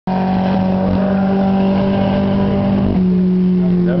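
Dirt-track race car engine running at steady high revs on a lone time-trial lap. Its pitch drops a step about three seconds in.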